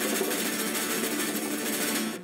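Studio audience applauding, a steady, dense patter of many hands clapping.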